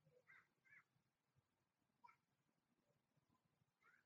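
Faint bird calls: two short calls close together in the first second, another about two seconds in, and one more near the end.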